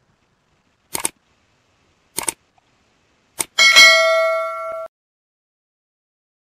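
Like-and-subscribe animation sound effects: a quick double click, another double click about a second later, and a single click. Then the loudest sound, a bright bell ding, rings out for over a second and cuts off suddenly.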